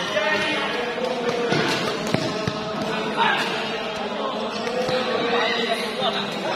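Badminton doubles rally: sharp, irregular racket hits on the shuttlecock, with voices of players and onlookers throughout.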